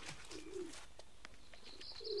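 A bird cooing once, low and brief, over a quiet outdoor background.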